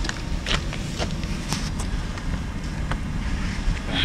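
Low, steady rumble of wind buffeting the camera microphone, with a few sharp clicks of footsteps on the platform paving.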